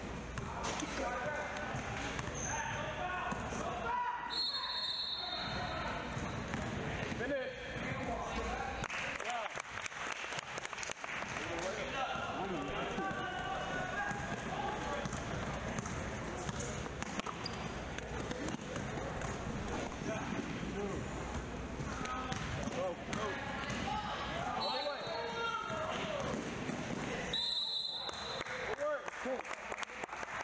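Basketball dribbled and bouncing on a hardwood gym court amid the chatter of players and spectators in a large hall. Short, shrill whistle blasts come about four seconds in and twice near the end.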